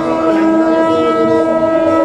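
A conch shell (shankha) blown in one long, steady, unwavering note during the lamp offering, with voices chanting underneath.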